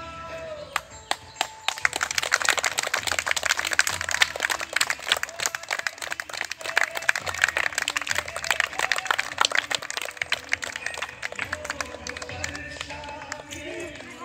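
A group of children clapping, a dense, uneven patter of hand claps that starts about a second and a half in and dies away a couple of seconds before the end, with a song playing faintly before and after it.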